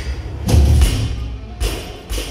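Loaded barbell with rubber bumper plates dropped from overhead onto a rubber gym floor: a heavy thud about half a second in, then a second, smaller thud near the end as it settles. Bass-heavy music plays throughout.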